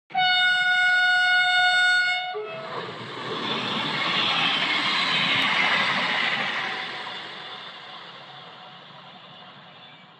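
A steady, single-pitched horn blast for about two seconds, then a loud rushing noise that swells and slowly fades away.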